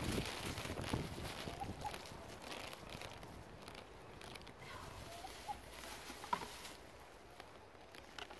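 Water from a plastic bottle splashing and pattering onto grass, fading away over the first few seconds. A few faint short bird calls sound in the background.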